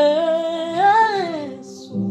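A woman singing one long held note that swells upward about a second in and then falls away, over soft, steady backing music with a sustained drone.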